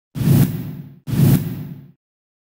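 Channel-ident sound effect: two identical whooshes with a deep low rumble. The first comes just after the start and the second about a second in, each hitting at once and fading away over about a second.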